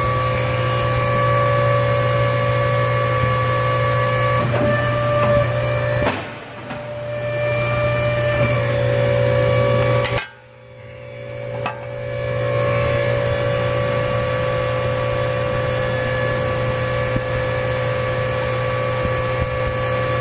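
Hydraulic pump of a 90-ton Edwards ironworker running with a steady hum and whine while the shear cuts a 6-inch by 5/8-inch steel plate. The sound drops away sharply twice, about six and ten seconds in, then builds back up.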